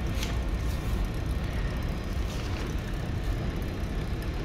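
A steady low rumble, with a few faint rustles of paper as the printed drill planner sheets are handled and the page is changed.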